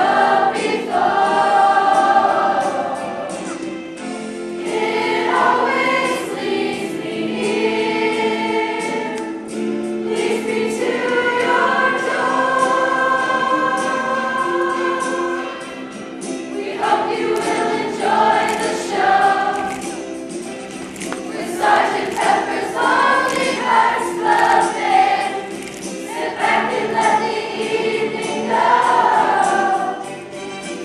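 A mixed choir of boys and girls singing a pop song, many voices together in continuous phrases.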